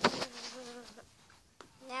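A sharp clatter at the start, then a voice humming one steady nasal tone for about a second before it fades out.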